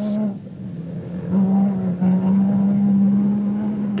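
Off-road race vehicle's engine held at high revs under full throttle, getting louder and rising a little in pitch about a second in, then holding a steady note.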